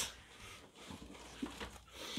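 Quiet room with a few faint rustles and taps near the end, as of something being handled.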